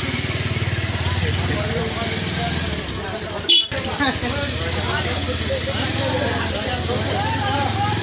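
A steady, low engine hum runs under faint background voices, with one sharp knock about three and a half seconds in.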